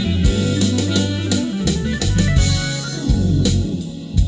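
A jazz song playing back through a car's aftermarket multi-way audio system in the cabin. This stretch is instrumental, with no singing, over a strong, full bass line.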